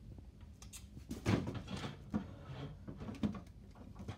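Scattered light clicks and knocks with rustling, the loudest a noisy knock just after one second in, from a door or cupboard being handled in a small room.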